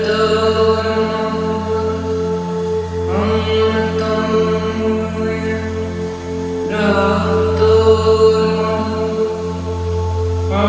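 Tibetan singing bowls ringing in a steady layered drone, with a woman's voice chanting a mantra in long held notes, each new note starting about three and about seven seconds in.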